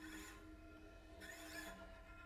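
Solo cello played with extended techniques: two brief, hissy scraping noises about a second apart over a faint sustained tone, all very quiet.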